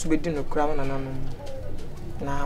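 A man's voice speaking in a low tone, with one syllable held out about a second in.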